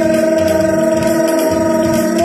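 Live Kannada sugama sangeetha (light classical song) performance: a male singer holds one long, steady note over tabla and keyboard accompaniment.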